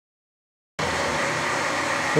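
Clausing horizontal milling machine running, its arbor and gear cutter spinning: a steady mechanical hum and whir that cuts in abruptly about three-quarters of a second in, after dead silence.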